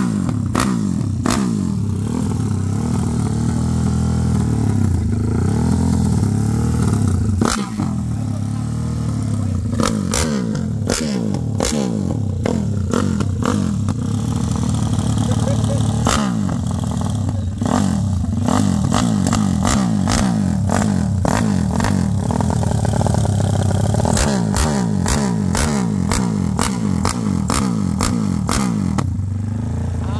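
Single-cylinder motorcycle engine, a CG-type motor bored out to 70 mm (over 300 cc), running stationary and revved again and again, its pitch climbing and falling, with many sharp cracks throughout.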